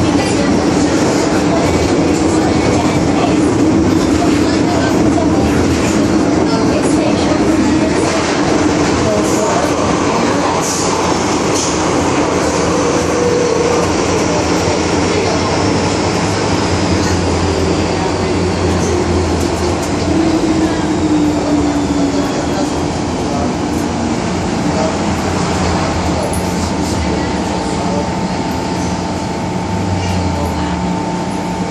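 Interior running noise of an MTR M-Train (Metro Cammell electric multiple unit) travelling through a tunnel: a loud, steady rumble of wheels and car body. Through the middle a high whine slowly falls in pitch, and a steady tone joins in near the end.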